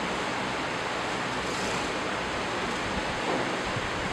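Steady, even hiss of background noise with no other events.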